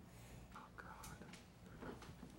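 A faint, distant voice saying "oh" away from the microphones, over a steady low room hum, with a couple of faint clicks.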